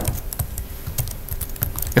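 Computer keyboard typing: a run of irregular key clicks, several a second.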